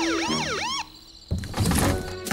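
Cartoon police siren sound effect: a fast rising-and-falling wail, about two cycles, that cuts off suddenly just under a second in. A few dull thuds follow near the end.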